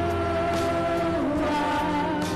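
Live worship music: a band and singers holding long, sustained notes, with a slight dip in pitch about halfway through.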